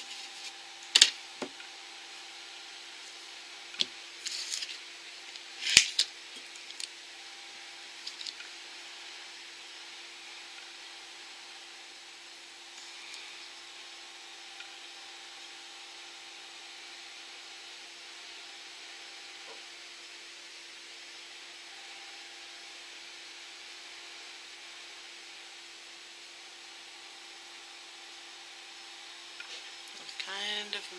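Nail-stamping tools handled against a metal stamping plate: a few sharp clicks and short scrapes over the first eight seconds, the loudest about six seconds in. After that there is only a faint steady hum.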